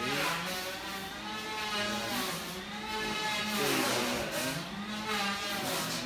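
A motor running steadily, its pitch dipping and rising again several times.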